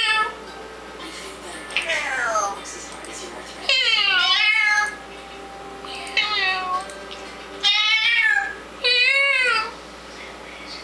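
African grey parrot calling: about five separate drawn-out calls, each sliding in pitch, several falling then rising again.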